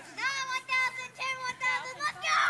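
A young child singing a short, high-pitched tune in several held notes.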